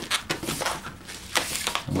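An inflated black 260 latex modelling balloon handled and rubbed between the hands, giving a series of short irregular rubbing noises, the loudest about one and a half seconds in.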